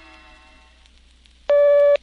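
A held music chord fading out, then, about one and a half seconds in, a loud steady half-second beep that starts and stops abruptly: a filmstrip's audible advance tone, the cue to turn to the next frame.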